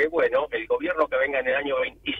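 Speech only: a man talking in Spanish over a telephone line, the voice thin and cut off above the middle range.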